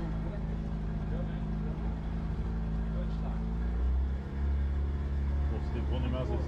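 Engine of a small lagoon tour boat running steadily at low speed; about four seconds in, its note drops and a deeper hum grows stronger.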